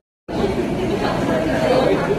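Indistinct chatter of several people talking in a restaurant, starting suddenly after a brief silence about a quarter second in, then holding steady.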